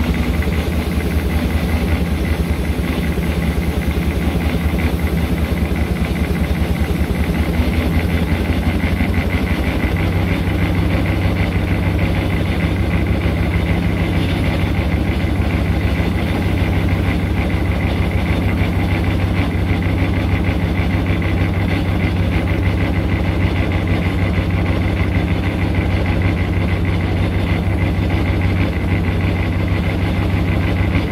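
Foden steam wagon running along the road, heard from on board: a steady mechanical clatter with a fast, even beat from its engine and running gear. The low note shifts slightly about ten seconds in.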